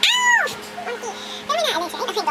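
A woman's short, high-pitched yelp of pain as cold wax is pulled off her underarm, rising and falling in pitch over about half a second, followed by a few short vocal sounds.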